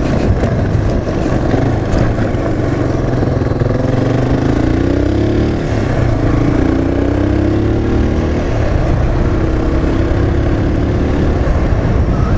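Motorcycle engine running while riding, over a steady low rumble; from about a third of the way in, its pitch rises in several stretches as it accelerates.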